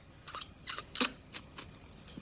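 Toenails being snipped: about five or six short, sharp clicks at uneven intervals, the loudest about a second in.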